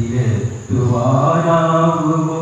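A man reciting a Malayalam poem in a chanted, sung style, his voice held on long steady notes; the line breaks briefly just after half a second, then one long held phrase follows.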